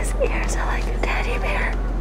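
Soft, indistinct whispered voices murmuring, over a steady low hum.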